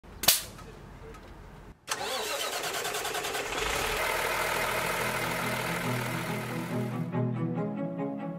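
A sharp click, then about two seconds in the truck's Cummins X15N natural-gas engine cranks, starts and runs. Music fades in over it and takes over near the end.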